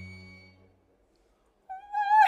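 A low bowed cello note and a high held tone die away, leaving about a second of near silence. Near the end, a female voice comes in singing a wavering, vibrato-laden note.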